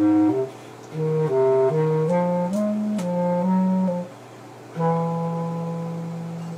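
A solo wind instrument playing a slow stepwise melody in a low to middle register, with short breaks between phrases and one long held note near the end.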